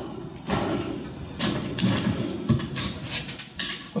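Irregular rustling and light knocks as a valve spring compressor tool and a wrench are handled and taken off an aluminium cylinder head.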